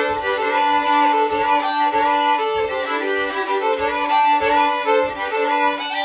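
Two fiddles playing a Cajun tune together, with steady held low notes sounding under the moving melody. A low thud keeps time about twice a second underneath.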